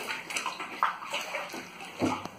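Water splashing and sloshing inside a 3,000-litre water tank, an irregular wash of water noise with a few short splashes.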